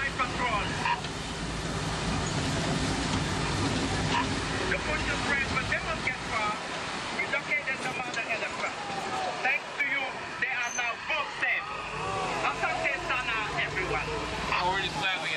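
Safari truck's engine running with a low rumble under the passengers' chatter; the rumble falls away about six seconds in, leaving mostly voices.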